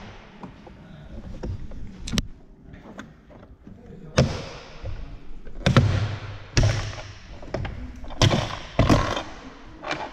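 Plastic retaining clips of a Seat Leon Cupra rear door card popping loose one after another as the panel is pried off the door: about six sharp snaps, with rustling and handling of the trim in between. The clips are the very strong Volkswagen-type push clips.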